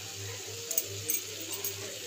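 Dum aloo curry simmering in a kadhai on a gas flame, a soft steady sizzle with a few faint clicks over a low hum.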